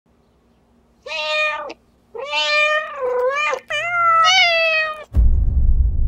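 A domestic cat meowing three times, long drawn-out meows, the second and third longer and wavering in pitch. About five seconds in, a sudden deep thud with a low rumble, the loudest sound.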